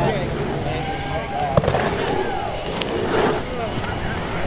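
Several people's voices calling out and talking over a steady outdoor background, with a single sharp crack about a second and a half in.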